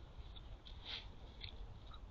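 Faint outdoor background: a low, steady rumble with a few short, faint high-pitched chirps or clicks, the clearest about a second in.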